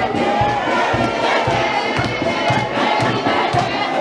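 Military marching band of brass and saxophones with a sousaphone playing a lively tune over a steady drum beat, with a crowd cheering and shouting close by.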